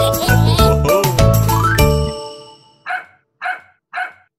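Children's song music with a bass line and melody that ends about two seconds in, followed by three short dog barks about half a second apart.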